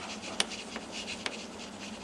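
Chalk writing on a blackboard: a faint scratching with a few sharp taps of the chalk against the board, the loudest about half a second in.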